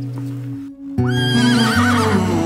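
A horse whinnies about a second in, the call rising and then wavering up and down, over background music.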